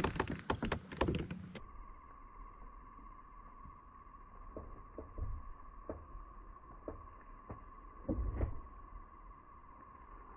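Quiet handling of a smallmouth bass held in the water beside a kayak: scattered light knocks and small water sounds, louder for a moment about eight seconds in, over a steady faint hum. The sound turns dull about a second and a half in.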